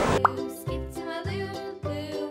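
A cartoonish pop sound effect about a quarter second in, then a playful, children's-style music jingle of steady notes over a low beat about twice a second.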